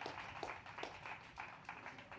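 Faint, scattered clapping from a few people, irregular claps several times a second.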